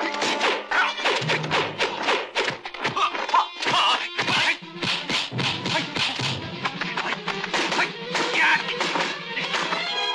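Kung fu film fight soundtrack: music under a rapid run of sharp dubbed hits, several a second, the sound effects for punches and blows.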